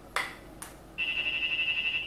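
Uniden R7 radar detector sounding its K-band alert: two brief clicks, then about a second in a loud, steady, high-pitched warbling alert tone. It is a false alert from a Bosch radar source at 24.193 GHz, picked up because the detector is set to full-wide K band with no segmentation.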